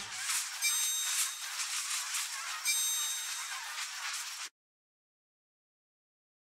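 End-card sound effect: a hissing, crackling noise with bright ringing tones twice, once near the start and again in the middle. It cuts off abruptly about four and a half seconds in.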